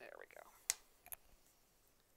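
A brief murmured voice sound, then a sharp click and, about half a second later, a quick double click from the wooden embroidery hoop and needle being handled.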